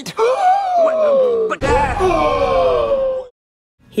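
A person's voice letting out two long, drawn-out cries one after the other, each sliding down in pitch, with a low rumble under the second. The voice cuts off suddenly shortly before the end.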